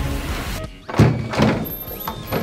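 Music playing that cuts off abruptly about half a second in, followed by two loud thunks at a door about a second in.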